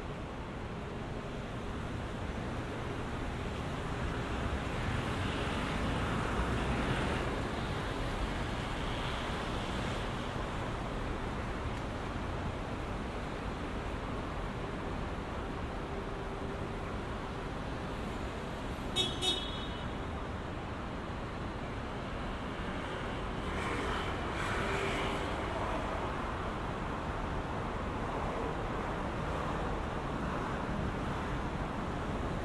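City street traffic: cars passing on the road beside the pavement, swelling twice as vehicles go by. A little past the middle, two short high-pitched beeps sound in quick succession.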